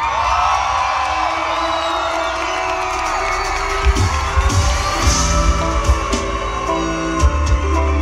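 Live band playing an instrumental stretch of a pop song, with electric bass, drum kit and guitar, and the audience cheering and whooping over it. Sharp drum hits come in about halfway through.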